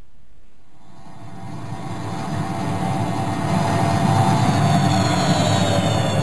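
Synthesized science-fiction sound effect used as a scene transition: a low rumbling hum that swells over the first few seconds, overlaid by whistling tones that slowly fall in pitch in the second half.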